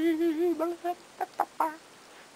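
A young woman's voice holding a sung note that wavers in pitch and trails off, followed by a few short, high-pitched vocal squeaks.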